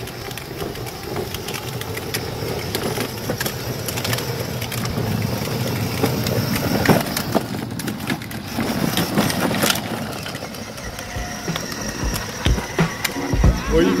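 Hard plastic wheels of a children's 18-volt electric ride-on Jeep rolling and rattling over concrete with many small clicks, along with the whir of its small electric drive motors.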